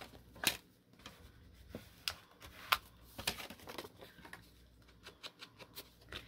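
Paper and card pieces being handled and shifted on a craft cutting mat: faint rustling with a few sharp clicks and taps, the loudest a little under three seconds in, and a run of faint ticks near the end.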